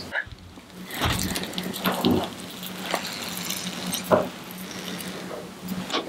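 Cloth piping bag squeezed to pipe frosting onto cupcakes, making short wet squishing noises about once a second, over a steady low hum.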